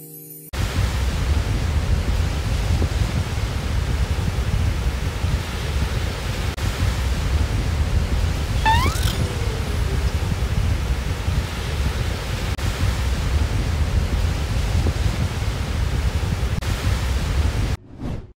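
Beach surf ambience: a loud, steady rushing noise, heaviest in the low end, that starts just after half a second in and cuts off suddenly near the end. A short rising chirp sounds once about halfway through.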